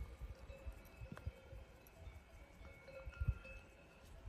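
Faint bells tinkling on and off, over the low thumps and rumble of footsteps on a rocky mountain trail, the heaviest step about three seconds in.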